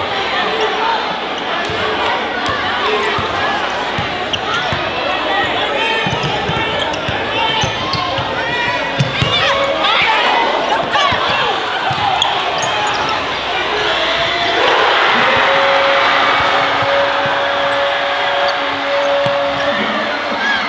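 Basketball dribbled on a hardwood gym floor under steady crowd chatter in a large echoing gym. About fourteen seconds in, the crowd swells into cheering, with a long steady held tone through it that stops near the end.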